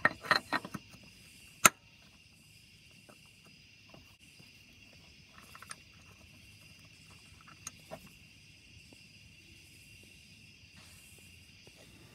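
Plastic power steering pump pulley being handled and pushed onto the pump hub by hand: a quick run of sharp clicks and knocks in the first second, then one loud sharp click about a second and a half in, and a few faint ticks later. Insects chirp steadily in the background.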